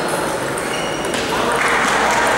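Table tennis hall ambience: celluloid balls ticking off tables and bats at nearby tables, over a steady murmur of onlookers' chatter.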